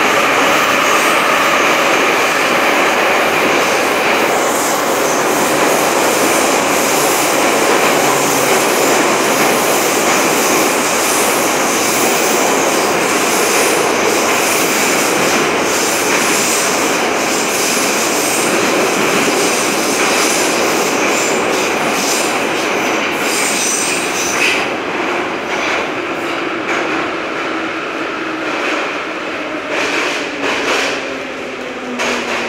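Inside a Soviet-built 81-717/714 metro car running through the tunnel: a loud, steady rumble and rush of wheels on rail, with a high whine over it. Over the last few seconds the noise eases off as the train slows into the station, and a lower whine falls in pitch.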